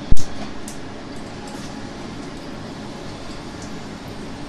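A single loud thump just after the start as a desktop PC is switched on, followed by a steady hum of running machinery.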